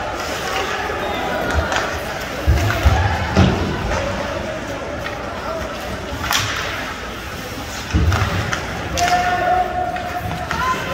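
Ice hockey game sounds: heavy thuds against the rink boards about two and a half seconds in and again near eight seconds, with sharp stick-and-puck clacks among them. Voices murmur throughout.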